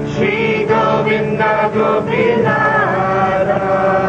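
Devotional kirtan chanting: a voice sings a melodic line that bends in pitch over steady, held instrumental tones.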